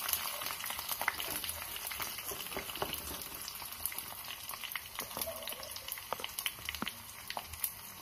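Shallots, garlic cloves and dried red chillies frying in hot oil in a nonstick pan, a steady sizzle with many scattered pops and crackles, as a wooden spatula stirs them. The sizzle eases a little toward the end.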